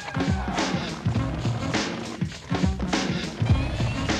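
Music with a steady drum beat and deep bass notes that drop in pitch on each beat.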